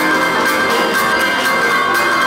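Two pianos playing fast boogie-woogie together, with ringing treble figures over a driving bass. A drum kit keeps a steady beat of about four strokes a second.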